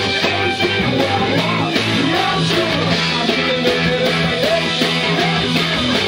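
Live rock band playing at a steady loud level: electric guitar and a drum kit, with a male singer on the microphone.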